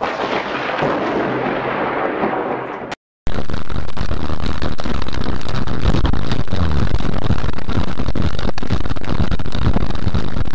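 Thunderstorm noise: a loud, rushing rumble that cuts off suddenly about three seconds in, then a louder, steady, crackling roar that sounds distorted.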